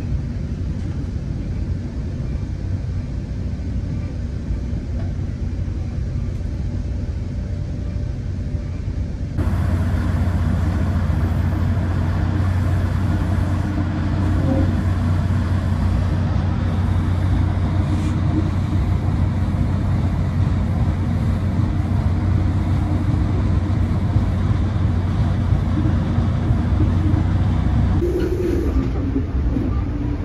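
FrontRunner diesel commuter train running, heard on board as a steady low rumble and hum. It turns abruptly louder, with a stronger deep drone, about a third of the way in, where the view is at the end of the diesel locomotive, and changes again shortly before the end.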